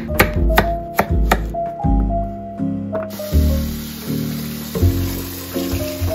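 Knife chopping carrot on a cutting board, crisp chops about two or three a second that stop after a second and a half, over soft background music. About halfway, a tap starts running into a rice pot as the rice is rinsed by hand, a steady hiss of water.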